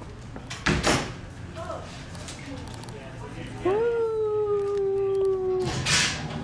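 A man's long, drawn-out 'ooooh' taunt: one steady held note lasting about two seconds, sliding up at its start. A sharp knock comes about a second in, and a rush of noise near the end.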